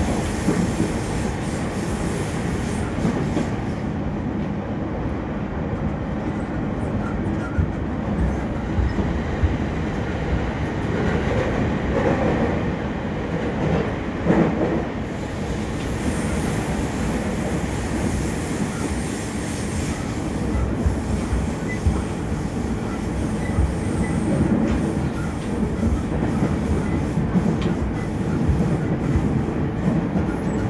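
Running noise heard inside a JR East E231 series 1000 electric commuter car in motion: a steady rumble of wheels on the rails, with irregular louder knocks and a somewhat brighter, louder stretch about halfway through.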